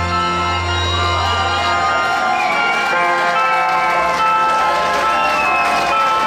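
A live rock band's electric guitars ring out on a held closing chord, the bass dropping away about two seconds in, with some crowd cheering at the song's end.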